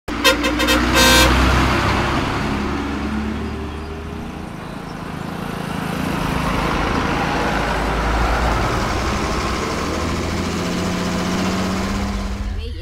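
A vehicle horn toots several quick times, then gives one slightly longer blast. After it a bus engine runs steadily, its sound fading a little and then growing louder again as the bus approaches.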